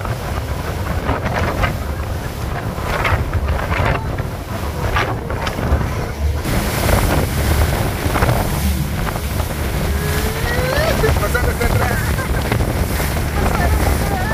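Wind buffeting the microphone and water rushing past the hull of a motorboat running at speed over the sea, with a low steady rumble beneath. The hiss of spray grows louder about halfway through.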